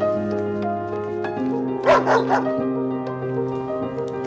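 Soft background music of sustained chords, with a dog giving a quick run of about three short barks about two seconds in.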